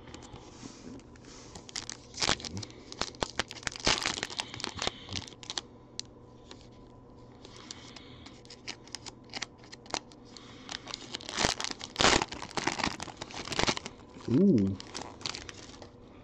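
Foil wrapper of a Panini Select baseball card pack being torn open and crinkled by hand. It comes in two bursts of tearing and crackling, one a few seconds in and another longer one near the end, with quieter shuffling of the cards between.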